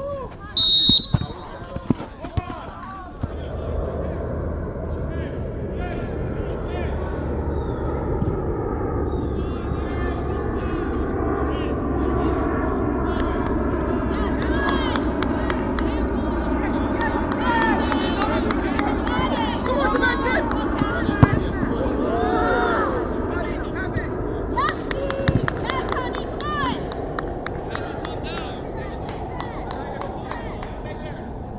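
Youth soccer match on the field: players shouting and calling to each other over a steady low rumble of wind on the microphone. A short, shrill referee's whistle blast comes about a second in.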